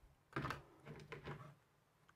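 Faint handling noise of a folding knife being picked up and moved over a hard work surface: a soft knock about a third of a second in, then a few quieter scrapes and taps.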